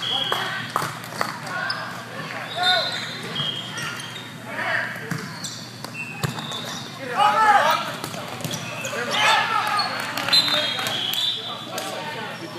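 Indoor volleyball rally in a large hall: the ball smacked by hands several times, sneakers squeaking on the court floor, and players shouting, loudest in two bursts in the second half.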